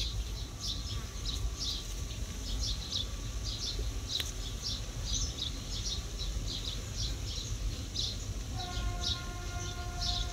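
Small birds chirping over and over in short high calls, several a second. Near the end a steady horn-like tone sounds for about a second and a half.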